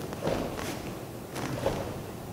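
Quick front-hand karate punches thrown with a step: about four short swishes of the gi and bare feet moving on the foam mat.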